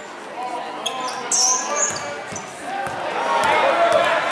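Basketball bounced on a hardwood gym floor during play, with a few knocks, a brief high squeak about a second and a half in, and shouting voices echoing in the hall that grow louder near the end.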